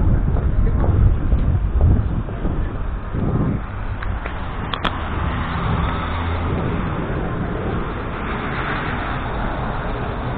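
City street traffic: cars moving on a busy road, a steady low rumble of engines and tyres, a little louder in the first couple of seconds, with one brief click about halfway through.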